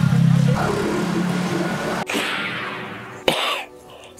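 Background music over a steady low hum that cuts off abruptly about halfway through. Near the end comes a single sharp cough from a sick old man.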